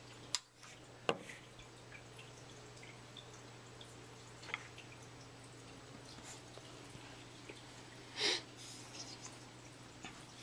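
Faint fish-tank water dripping and trickling over a steady low hum, with two sharp clicks within the first second and a brief louder sound near the end.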